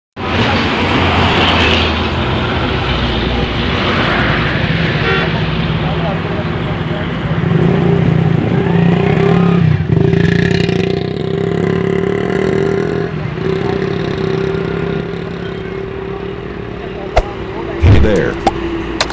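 Heavy truck's diesel engine running under load as it pulls its trailer across soft dirt, a steady drone that grows louder in the middle and eases toward the end. A couple of sharp knocks come near the end.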